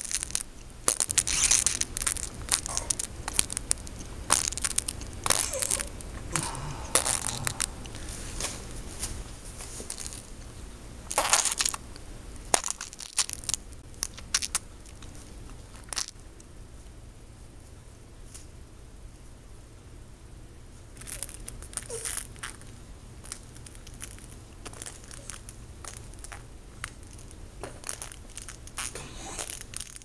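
Irregular crunching and crinkling noises in clusters of sharp bursts, densest in the first dozen seconds, then sparser with another flurry about twenty seconds in, over a steady low hum.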